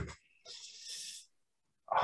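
A person's short, soft breath drawn in through the mouth, a faint hiss under a second long.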